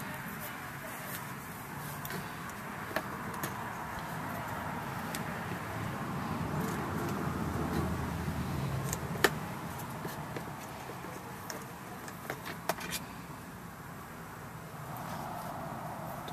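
Wiring and spade connectors being handled against a plastic golf cart panel: a few sharp clicks and taps, the loudest about midway, over a steady outdoor background hum.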